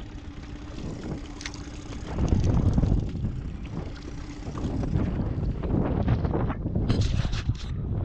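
Wind buffeting the microphone in a steady low rumble, swelling about two seconds in, with a quick run of knocks and clicks from handling in the aluminium boat near the end.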